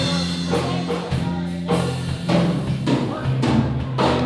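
A live rock/country band plays an instrumental intro on drum kit, electric and acoustic guitars and bass guitar, with steady drum hits under sustained chords, before the vocal comes in.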